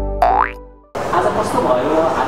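End of a TV channel's logo jingle: a held synth chord fades away, with a short rising cartoon-style glide sound effect over it near the start. About a second in it cuts abruptly to a noisy room with indistinct background voices.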